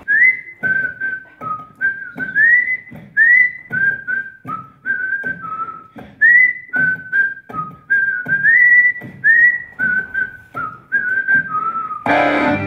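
A person whistling a tune in short held notes, several of them sliding up into a higher note, over a steady beat of sharp percussive knocks, about two a second.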